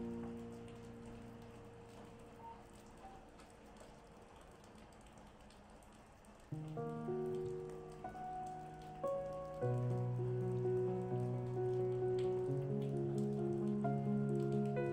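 Calm solo piano music over a steady recorded rain sound. A held chord fades away in the first seconds, leaving mostly the rain, then the piano comes back in about halfway through and plays louder and fuller, with low bass notes, near the end.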